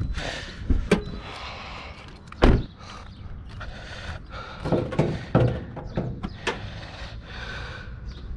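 2018 Toyota Corolla's driver door shutting with a loud thud about two and a half seconds in, after a sharp click. Smaller clunks and clicks follow as the bonnet is unlatched and raised.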